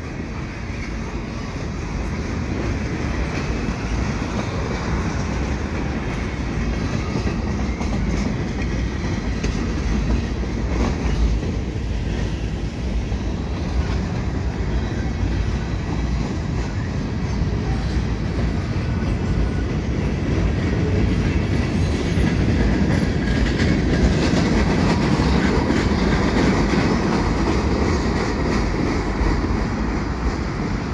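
Freight cars of a CN manifest train rolling over a steel railway bridge: a continuous rumble and clatter of steel wheels on rail, a little louder in the last third.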